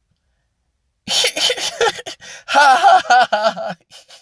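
A man's voice making a non-word vocal sound after a short silence: breathy at first, then voiced with a wavering pitch, lasting about three seconds.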